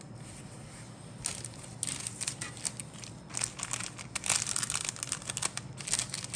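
Thin clear plastic bag crinkling as it is handled with a model kit sprue. The crinkling starts about a second in and turns denser and louder from about three seconds.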